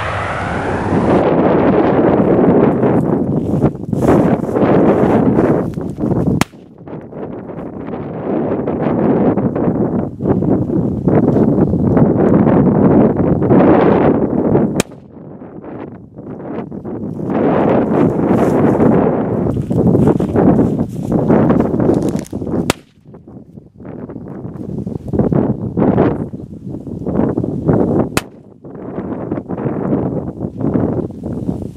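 Several Water Cracker firecrackers going off in a ditch with loud bangs, amid continuous gusty wind on the microphone.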